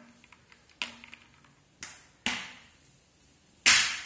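Ice cubes dropped one at a time into glass tumblers of juice: about four sharp knocks, each dying away quickly, the last and loudest near the end.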